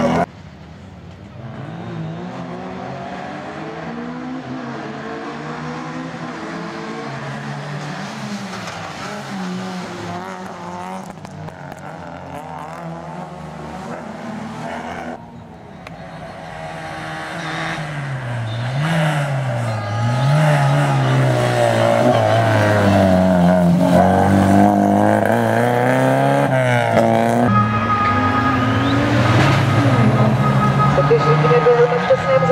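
Škoda Favorit rally car's four-cylinder engine revving hard and changing gear, its pitch rising and dropping again and again. It is fainter in the first half; after a cut about halfway it is much louder and closer.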